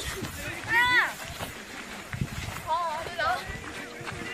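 Girls' voices calling out in short high-pitched exclamations, one about a second in and a wavering one near three seconds, over the footsteps of players walking and jogging on a sandy dirt field.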